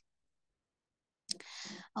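Dead silence for over a second, then a single mouth click and a short intake of breath just before the speaker goes on talking.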